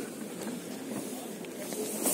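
Steady hissing background noise, with faint voices underneath.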